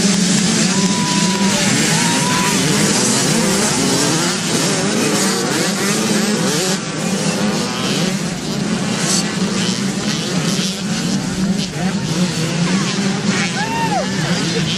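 A pack of youth dirt bikes launching together at a mass race start, many small engines revving hard at once. The din eases slightly after a few seconds as the pack pulls away.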